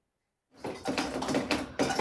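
Water leaking through a damaged ceiling, dripping and splashing in a small room. It starts suddenly about half a second in, after a moment of dead silence.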